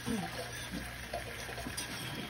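A spoon stirring a small stainless saucepan of hot broth with butter and jalapeños, the liquid swishing steadily with small scattered clinks and splashes.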